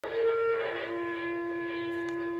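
A sustained musical tone, like a horn or wind instrument, holding one note and then stepping down to a lower note that is held steadily.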